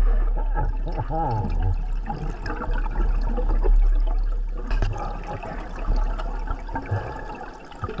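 Underwater gurgling of a scuba diver's exhaled air bubbles, irregular and uneven, over a steady low rumble heard through the camera housing.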